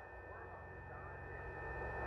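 Faint steady low hum with a thin, steady high-pitched whine from a running portable LED projector.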